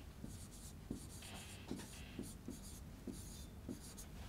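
Chalk writing on a chalkboard: faint scratching with short taps of the chalk as a line of text is written.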